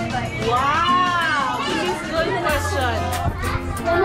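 Voices and high-pitched calls over background music, with a steady low bass note coming in past the middle. About a second in, one high voice rises and falls.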